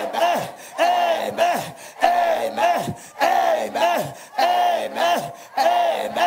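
Shouted "amen" repeated over and over in a steady rhythm, about one a second, each ending on a falling pitch: the string of amens a prayer leader has called for, fourteen times over.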